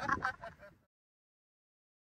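A man's laughter trailing off and fading out within about the first half second, then dead silence.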